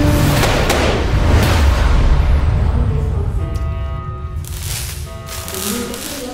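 Trailer score: deep rumbling booms and a heavy hit at the start, giving way about halfway through to a held sustained chord punctuated by short whooshing swells.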